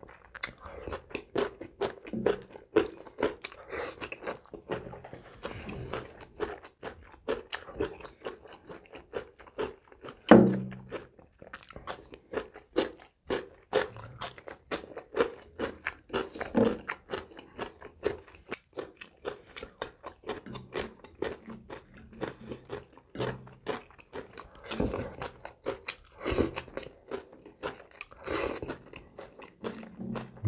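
Close-miked chewing and crunching of food in the mouth: a dense, irregular run of short wet clicks and smacks, with one louder burst about ten seconds in.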